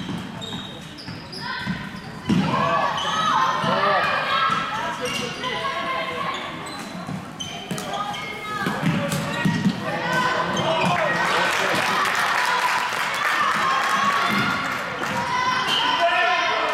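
Floorball game sounds in a large sports hall: players' shoes squeaking on the court floor, sticks clicking against the plastic ball, and players' voices calling out over the play.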